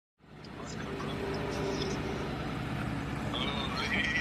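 A motor vehicle engine running steadily, fading in at the very start, with a brief voice or higher sound near the end.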